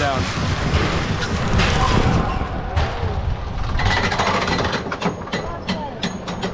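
Intamin bobsled coaster car rolling out along the track with a steady rumble from its wheels, then a run of rapid clicks about five seconds in as it starts up the lift hill.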